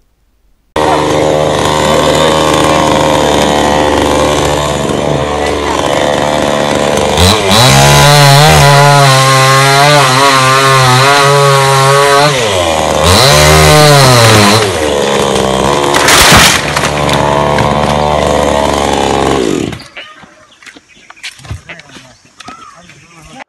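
Chainsaw running at high revs while cutting through the wood of a felled tree. Twice its engine note sags and climbs back as the chain bites and clears the cut. It starts about a second in and stops about two seconds before the end.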